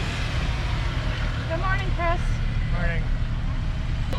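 Steady low rumble of a Jeep Wrangler running at low speed, with faint voices talking in the background.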